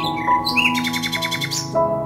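A small songbird chirping a few times, then giving a fast, even trill of about a dozen notes in a second, over calm sustained instrumental music.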